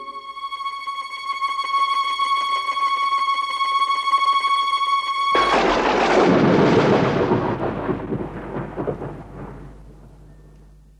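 An electronic sound effect: a single high, steady tone swells for about five seconds. About halfway through it gives way at once to a loud, noisy whooshing crash that fades away over the next four seconds.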